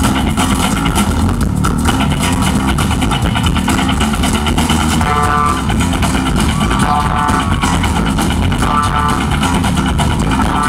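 A rock band playing live, with bass guitar, electric guitar and drums, heard from the audience. In the second half a short higher phrase repeats about every two seconds over the steady bass and drums.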